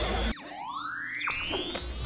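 Background music cuts out shortly after the start. A synthesized cartoon whistle then slides steadily upward in pitch over a few seconds.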